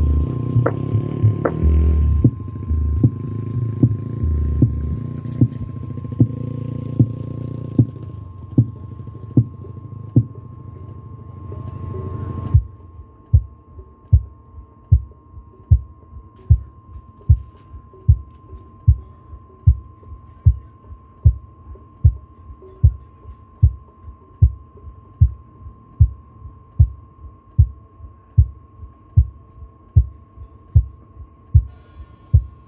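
Large outdoor PA sound system under a sound check: loud bass-heavy music with a regular beat that cuts off suddenly about twelve seconds in, then a single low thump repeated evenly about one and a half times a second through the subwoofers. A faint steady high tone runs underneath.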